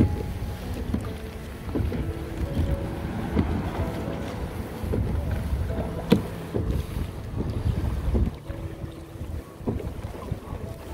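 Wind buffeting the microphone, with water slapping and rushing against the hull of a pedal kayak under way. Scattered light knocks run through it, the sharpest about six seconds in.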